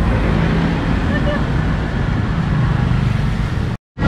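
Street traffic of motorbikes and tuk-tuks: a steady low noise of passing engines and tyres. It cuts off abruptly near the end.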